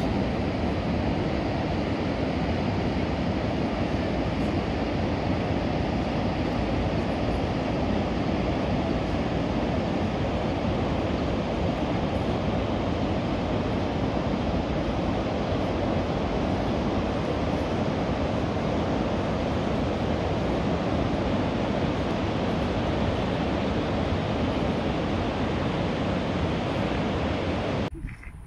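Steady rush of river water pouring over a wide low weir, one even unbroken noise.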